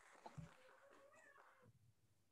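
Near silence, with a faint, drawn-out wavering tone lasting about a second and a half.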